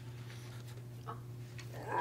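Room tone: a steady low hum with a fainter steady higher tone, and a faint brief click about a second in.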